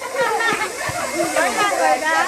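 A group of children's voices chattering and calling out over one another, excited and overlapping, with no single clear speaker.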